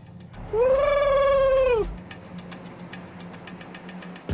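A man whooping "Woo!" in celebration: one high held cry about a second and a half long, over a steady low hum.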